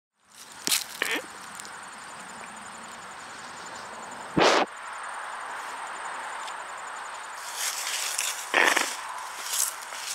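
Alpacas right up against the microphone: several short, noisy bursts close to it, the loudest about four and a half seconds in, over a steady outdoor background hiss.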